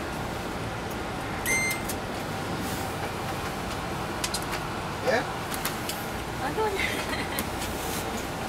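Inside a 2002 MCI D4000 coach under way: the steady noise of its Detroit Diesel Series 60 engine and the road, with light clicks and rattles. About one and a half seconds in, a short high stop-request chime sounds, as the stop-request sign lights up.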